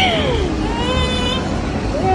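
A high-pitched voice making drawn-out wordless sounds: a falling cry at the start, then a held note, over a steady low rumble.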